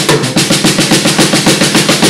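Drum kit played in a fast, even roll, about ten hits a second, as part of a live rock band's performance.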